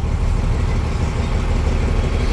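Diesel engine of a Tata bus running steadily, heard from inside the cabin as a low, even rumble.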